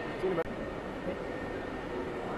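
Indoor hall ambience: a steady noisy rumble with faint background voices, and a brief knock just under half a second in.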